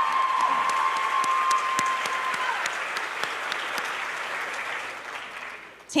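Audience applause, with one long high-pitched call held over it for the first couple of seconds. The clapping dies away near the end.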